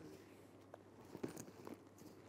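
Near silence with a few faint, short handling clicks and rustles as a holdall bag is lifted out of its gift box and cloth dust bag.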